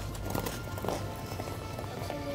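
Music with sustained tones plays over a steady low hum, with a few short scrapes of skate blades on ice as skaters push off.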